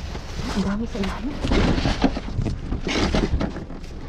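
Cardboard boxes and plastic-wrapped items rustling and crinkling in irregular bursts as they are handled and shifted inside a dumpster, loudest in the middle and near the end.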